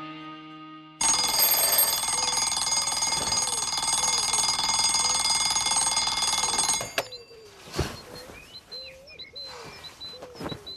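Bell alarm clock ringing loudly without a break for about six seconds, then cut off abruptly. Birds chirp and coo in the background, with a few soft knocks after the ringing stops. The tail of a guitar piece fades out just before the ring starts.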